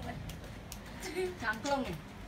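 Only quiet speech: a woman's voice speaking briefly about a second in, with no other distinct sound.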